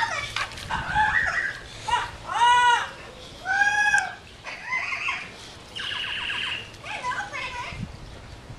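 Dog whining in a series of high, pitched cries that rise and fall, the two loudest and longest about two and a half and three and a half seconds in, with shorter, rougher whimpers between them.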